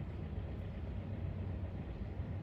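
Steady low background rumble with no distinct events, no hoofbeats or other separate sounds standing out.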